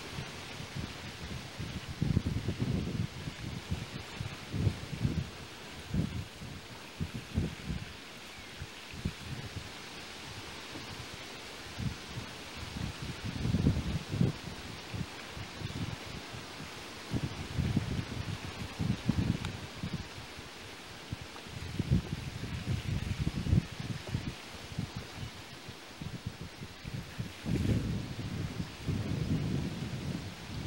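Wind buffeting the microphone in irregular low rumbling gusts over a steady hiss.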